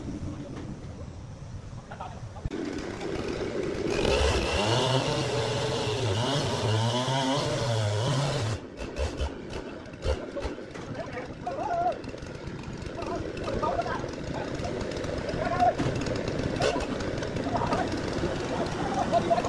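A petrol chainsaw runs from about four seconds in, its engine speed rising and falling. After that it cuts into a large log with a rougher, noisier sound, and people talk over it.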